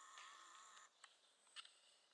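Near silence: quiet outdoor background with a faint steady high tone that fades out about a second in, followed by a couple of soft clicks.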